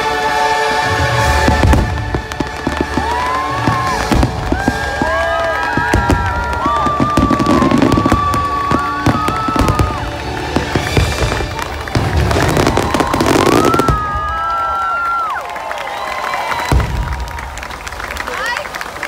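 Fireworks bursting, many sharp bangs and low booms, over loud show music.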